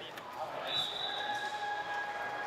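A long, steady high-pitched tone starts a little under a second in and holds to the end, over indistinct voices and the echo of a large hall.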